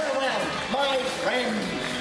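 Voices speaking over background music.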